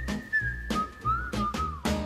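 A whistled tune, a single clear note held and then dipping and bending through a few lower notes, over background music with a regular beat.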